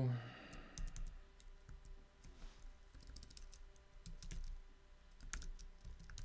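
Computer keyboard typing: scattered, irregular key clicks with short pauses between them.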